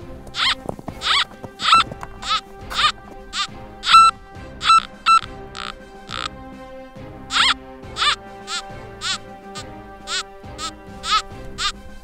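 Nokta Makro Gold Finder 2000 metal detector giving short, sharp signal tones about twice a second, one on each pass as the coil is swept back and forth over an iron meteorite. The tones pause for about a second just past the middle, then start again. It is a strong response to the iron.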